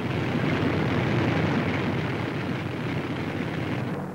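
Engines of a four-engined B-24 Liberator bomber running at takeoff power: a steady, dense drone with no breaks.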